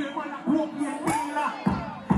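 Live stage-show sound through a PA: an amplified voice chanting on the microphone over music, with crowd noise underneath.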